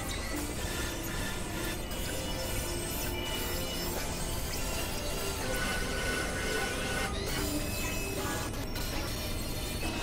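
Experimental electronic noise music: a dense, steady wash of noise with short held tones drifting in and out, and the high end dropping out briefly twice in the second half.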